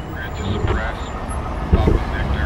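A fingerboard striking a wooden box surface: one sharp clack near the end, over a steady low rumble.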